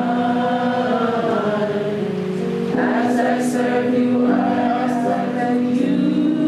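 A group of voices singing a slow meditation hymn together in long, held notes.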